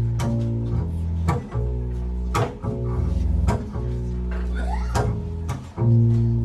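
Double bass playing low notes that change pitch about once a second, with sharp percussive hits about once a second over them.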